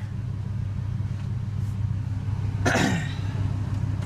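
A steady low drone inside the cab of a 2001 Ford F-150 whose 5.4-litre Triton V8 is idling. A person coughs once, about three-quarters of the way through.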